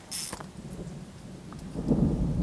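A short high hiss, then a low rumble of thunder that swells up near the end.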